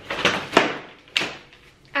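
Cybex Eezy S Twist compact stroller being pushed down to fold: a rustle and clatter of its frame and fabric seat, then two sharp clicks, about half a second and just over a second in, as the frame collapses shut.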